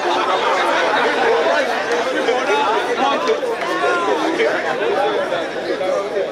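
Many people talking at once: overlapping crowd chatter, steady throughout.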